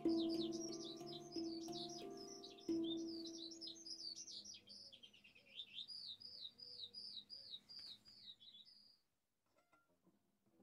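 Handpan notes struck a few times in the first three seconds, each ringing on and slowly fading, under a songbird singing rapid runs of repeated high chirps. Both die away near the end, leaving a brief silence.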